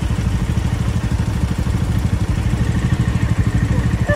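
Motorcycle engine running steadily close by, a loud, low, rapidly pulsing exhaust note held at one speed with no revving.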